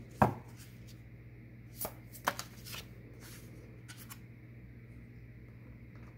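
Tarot cards being handled: a scatter of short light taps and slides between about two and four seconds in, as a card is drawn and set upright in a wooden card stand.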